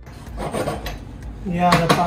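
Wooden spatula scraping and stirring fettuccine in a sauté pan, with light clinks against the pan. A man's voice starts near the end.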